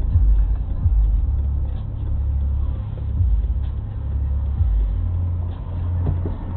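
Low rumble of a car's engine and road noise heard inside the cabin while the car creeps forward in slow traffic, picked up by a dashboard camera's microphone.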